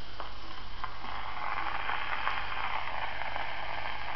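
Steady surface hiss of an Edison four-minute wax cylinder playing on a phonograph, with a few clicks in the first second, before any recorded voice comes in.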